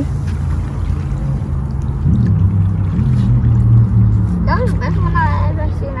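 A boat engine runs with a low, steady hum that swells and rises slightly in pitch between about two and four seconds in. A voice speaks briefly near the end.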